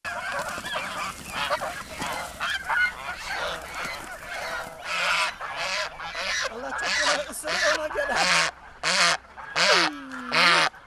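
A flock of domestic geese honking over one another, then, from about halfway through, one goose that has been caught and held honking loudly over and over, about two calls a second.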